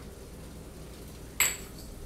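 A single sharp metal clink with a brief high ring about one and a half seconds in: a metal measuring scoop knocking against a saucepan while sugar is added. Otherwise faint room tone.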